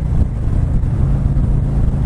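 Harley-Davidson Street Glide's Milwaukee-Eight 107 V-twin engine running steadily at highway speed, with wind rushing over the helmet microphone.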